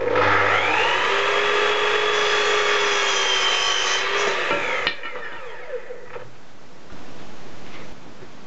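Electric sliding mitre saw switched on, its whine rising as the blade spins up, then cutting through a thin square wooden strip. About four seconds in it is switched off and the whine falls away as the blade runs down.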